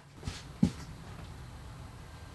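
Handling noise from working yarn and a crochet hook at a table: two soft low knocks in the first second, the second louder, then only a faint steady background.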